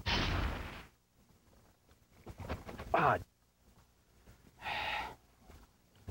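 A short burst of noise lasting under a second, the transition sound effect over the show's logo, followed by quieter sounds: a brief voice-like sound about three seconds in and a short hiss near five seconds.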